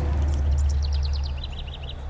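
A small bird's quick trill: a rapid string of high chirps that steps down in pitch about halfway through, over a steady low hum.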